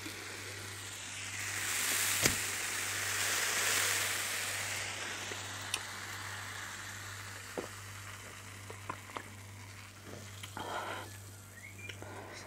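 Carbonated soft drink poured from a can into a glass and fizzing. The fizz swells over the first few seconds and slowly dies away, with a sharp tap about two seconds in and a few small clicks later.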